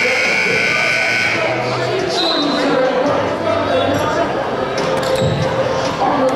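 Gym scoreboard horn sounding one steady high note for about a second and a half, then the chatter of players and spectators in a large echoing gym.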